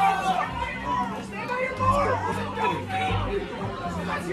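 Overlapping voices and crowd chatter with background music.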